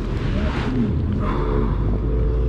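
Bass boat's outboard motor running steadily under way, with the rush of the boat moving over the water.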